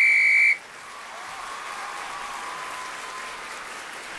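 One short, loud blast on a sports whistle, the starting signal for a children's race. It is followed by a crowd applauding, which grows a little louder.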